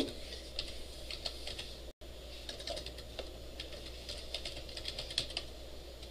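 Computer keyboard typing: irregular runs of key clicks.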